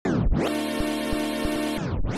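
A sampled music loop playing back from a beat in progress, with drum hits over a held, pitched sample. It starts with a quick pitch swoop like a record scratch, and near the end it slides down in pitch like a tape stop before cutting back in.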